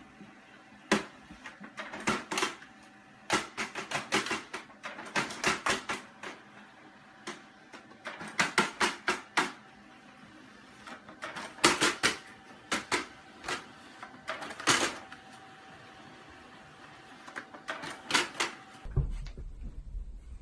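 Multifunction printer running: a faint steady hum under clusters of quick, sharp mechanical clicks and clacks, several a second, coming in bursts; it stops suddenly about a second before the end.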